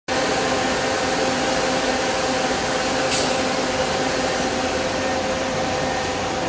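A parked Scania coach running: a steady mechanical rush with a constant whine over it, and a brief hiss about three seconds in.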